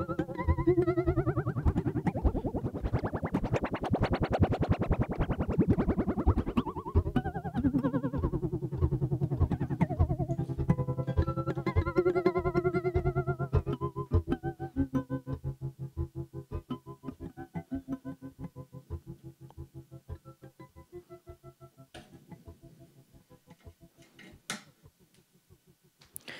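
Modular synth sound: a Morphagene tape-reel loop pulsing rapidly in loudness and wobbling in pitch, modulated by the E440 filter self-oscillating at a sub-audio rate as an LFO on its amplitude, phase and vari-speed. The pitch sweeps up and back down in the first few seconds, then the sound thins out and fades over the second half, with a few clicks near the end.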